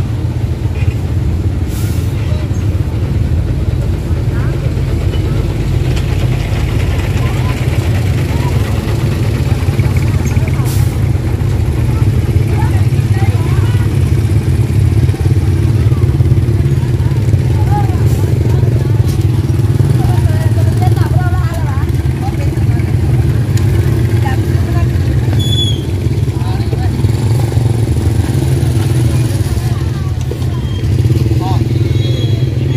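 A small motorcycle engine runs steadily with a low rumble, and distant voices chatter over it.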